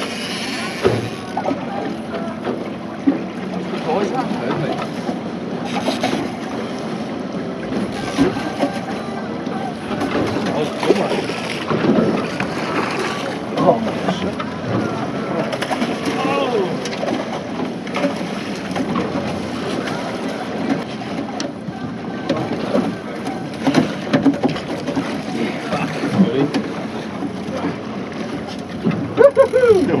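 Outboard motor running, with water and wind noise on the open deck of a boat, under indistinct voices of the crew.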